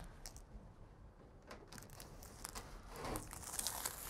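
Sealing tape being pulled off its roll and pressed around the joint of a metal duct pipe: faint crinkling and tearing with small clicks, a little louder about three seconds in.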